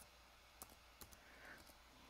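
Laptop keyboard being typed on: a few faint, separate key clicks as the last letters of a word are entered.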